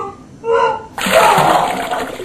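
A man gagging and heaving twice in short voiced bursts, then about a second in a loud wet gush of vomiting that splatters on and on.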